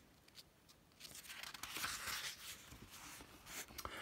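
Paper rustling as a page of a paperback book is turned by hand, starting about a second in and lasting a couple of seconds.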